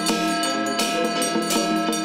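Traditional Chinese temple ritual music: held melodic tones with percussion strikes recurring every half second to a second.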